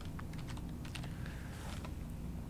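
Computer keyboard keys being typed: a few quiet, irregular keystroke clicks.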